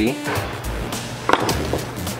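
Background music with a steady low beat, and a sharp knock about a second and a half in, with a smaller one just after: a hard tool knocking on the workbench as it is handled.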